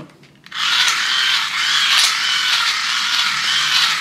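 Cheap hand-crank USB dynamo generator being cranked steadily from about half a second in: a whirring from its small gearbox that wavers in pitch with each turn of the handle. Loaded by a 5-watt LED strip drawing too much current, its plastic gears grind and skip against each other.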